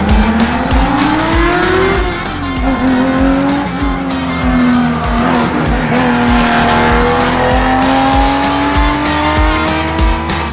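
Porsche 911 2.0 S rally car's air-cooled flat-six engine under hard acceleration. The revs climb for about two seconds, drop at a gear change, then hold and rise slowly again. Rock music with a steady drum beat plays alongside.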